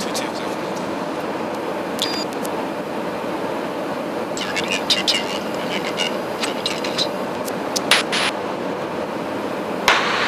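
Steady in-flight cabin noise of a Boeing KC-135R Stratotanker, the rumble of its engines and airflow heard from the boom operator's pod. Faint intercom chatter and clicks come through about halfway in and again near the end.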